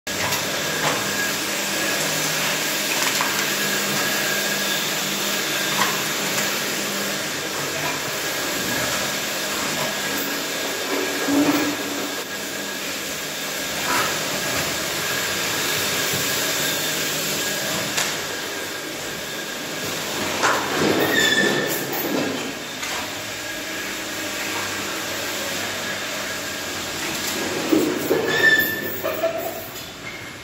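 Pneumatic screed pump at work: a steady rush of compressed air driving sand-cement screed through the delivery hose into the discharge pot, with a few knocks along the way.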